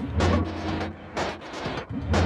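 Electronic techno drum loop playing from the VPS Avenger software synthesizer: a deep bass hit near the start under a pattern of percussive hits.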